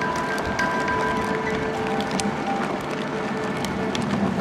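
Steady rushing roll of a racing wheelchair's wheels on tarmac at speed, with a few faint clicks. Several held musical notes sound over it, starting and stopping.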